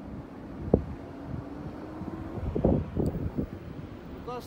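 Wind buffeting the microphone, with a faint steady hum in the first half, one sharp knock a little under a second in, and a cluster of low bumps near the end.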